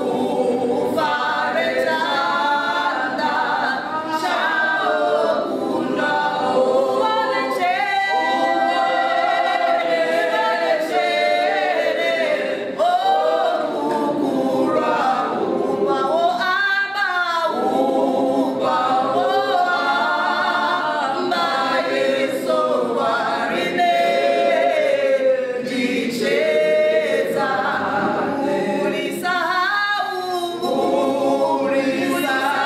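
Four women singing a song together, unaccompanied.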